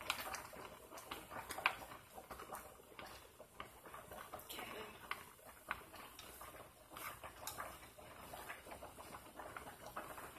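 Angel hair pasta boiling in a pot of water while wooden chopsticks stir it, giving irregular light clicks and taps against the pot over the bubbling, with one sharper knock about two seconds in.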